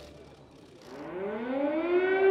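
An air-raid siren winding up less than a second in, its pitch rising and then levelling off into a steady held tone as it grows louder.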